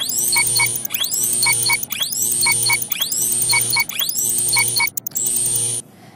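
Electronic glitch-style transition music: a quick rising sweep followed by two short beeps, repeating about once a second over a low hum, cutting off just before the narration resumes.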